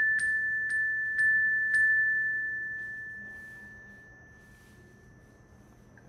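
A clear, single-pitched chime struck in a quick run of strikes about two a second, the first right at the start; the last stroke rings on and fades away over about three seconds. Each strike is one count for listeners to tally.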